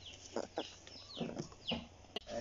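A few faint, short, high-pitched animal calls, several falling in pitch, spread across about two seconds.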